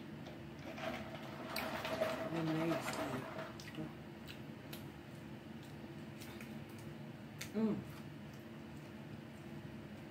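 Sipping a drink through a straw, with a noisy slurp from about one to three and a half seconds in. After that come scattered small clicks and rustles of fingers picking at food on paper wrapping, and a brief hummed sound that rises and falls near eight seconds in, the loudest moment.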